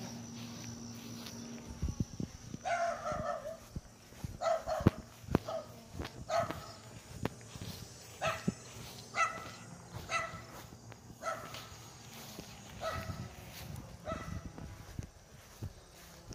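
A dog barking repeatedly, irregularly about once a second, starting a few seconds in. Footsteps on grass and light clicks underneath.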